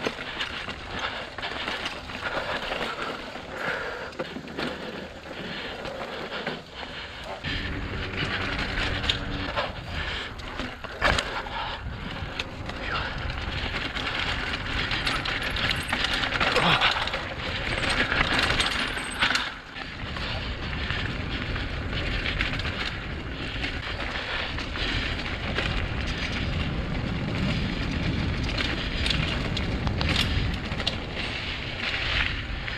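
Mongoose Ardor X1 mountain bike riding a dirt singletrack: the frame and drivetrain rattle with frequent clicks and knocks over bumps, and the tyres crunch on dirt and stone. A low rush from wind on the microphone comes in after several seconds.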